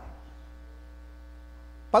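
Steady electrical mains hum: a low drone with a row of faint steady tones above it, picked up through the microphone and sound system.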